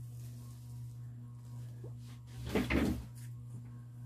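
A brief knock or clatter about two and a half seconds in, over a steady low electrical hum.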